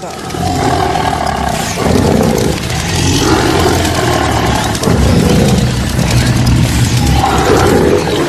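Tiger roar sound effects in an animated channel intro, loud and continuous.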